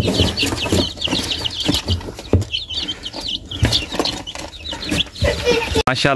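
A brood of young chicks peeping, many short high-pitched calls repeating quickly, with light knocks and rustling as a hand moves among them in a cardboard box.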